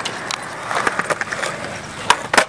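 Skateboard wheels rolling on concrete, with several sharp clacks of the board during the first second or so.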